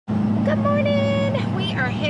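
A woman talking inside a car, with a drawn-out, pitched vowel about half a second in, over the car cabin's steady low hum.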